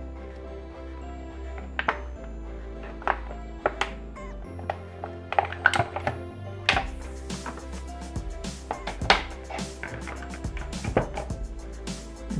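Background music, over which chunks of floured meat drop into a Thermomix's steel bowl in a run of sharp, irregular knocks and clicks, few at first and more from about halfway on.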